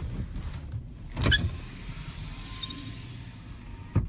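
A pickup truck's power window running down. It starts with a knock about a second in, the motor whirs steadily for about two and a half seconds, and it stops with a click near the end, over the low rumble of the truck.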